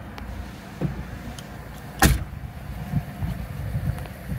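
A single heavy thud about halfway through, the rear liftgate of a 2020 Subaru Crosstrek being shut, with some quieter knocks and handling noise around it.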